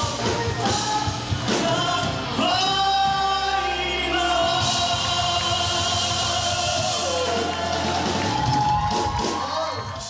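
A group singing together into handheld microphones, with several voices joining in. They hold long drawn-out notes through the middle.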